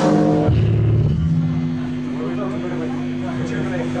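Stage amplifiers humming steadily between songs, with a short chord and a few low bass-guitar notes in the first second, under crowd voices.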